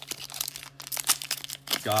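Pokémon TCG booster pack's foil wrapper crinkling and tearing as it is peeled open by hand: a quick, irregular run of crackles.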